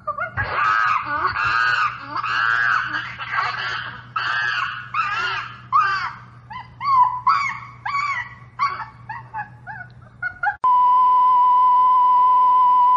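A run of chimpanzee screeching calls, one or two a second, each call rising and falling in pitch, the calls growing shorter and more broken toward the end. At about ten and a half seconds they cut off and a steady high TV test-pattern tone begins.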